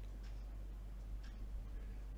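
Quiet room tone: a low steady hum with a few faint ticks scattered through it.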